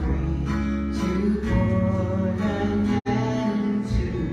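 Live acoustic folk band playing: strummed acoustic guitars over grand piano and electric bass. The sound drops out for an instant about three seconds in.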